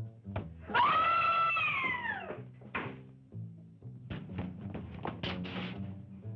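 Film underscore of plucked low strings. About a second in it is broken by a loud, high cry lasting a second and a half that falls in pitch at its end. Several short noisy bursts come near the end.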